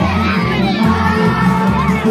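A crowd of young children shouting and cheering over loud music with a steady, stepping bass line.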